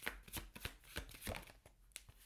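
A tarot deck being shuffled by hand: a faint run of quick, irregular card clicks and flicks, several a second.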